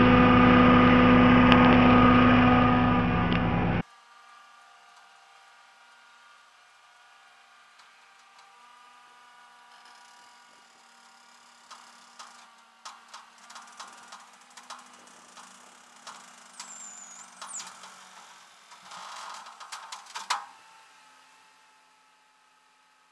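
Vehicle engine idling close by, a loud steady hum that cuts off abruptly about four seconds in. After that there are only faint handling rustles and scattered light clicks, with one short high chirp near the middle.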